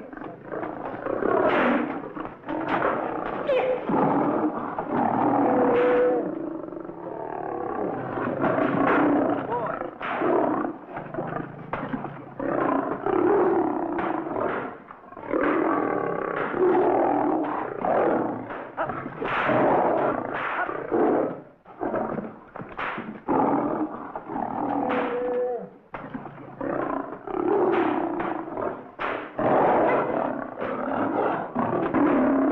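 Lions roaring and snarling repeatedly, one burst after another with only brief gaps, from a group of lions being worked with whip and chair in a cage.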